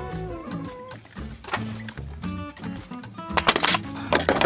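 Background music, with a short sharp burst of noise near the end as a nailer drives a nail through a steel joist hanger into the wooden ledger.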